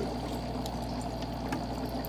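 Aeration bubbling steadily through a phytoplankton culture: an air line feeding air into a bottle of green algae culture and the water around it, with faint scattered ticks and a low steady hum underneath.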